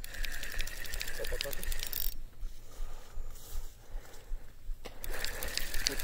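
A spinning reel being cranked, its gearing giving off a rapid, even clicking as it retrieves line under a heavy, steady pull without jerks. The winding pauses for about three seconds in the middle and picks up again near the end.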